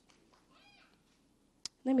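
A pause in a woman's amplified speech: near quiet with a faint, brief vocal murmur, a single sharp click, then her voice resumes near the end.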